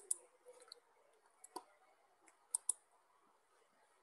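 A few faint, sharp computer-mouse clicks, the loudest a quick pair about two and a half seconds in.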